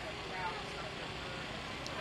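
Steady outdoor city ambience: a low hum of road traffic, with faint distant voices.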